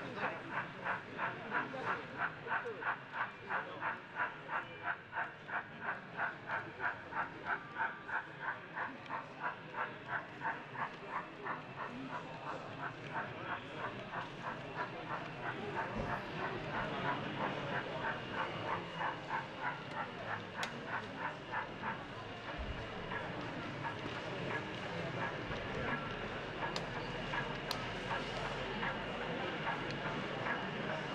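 Sound-fitted 00 gauge model steam locomotive chuffing in an even rhythm, about three chuffs a second, fading away after about twelve seconds into exhibition hall background noise.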